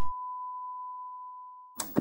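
Steady electronic test-card tone, one pure pitch around 1 kHz, fading slightly. It stops near the end, where a brief burst of noise comes in.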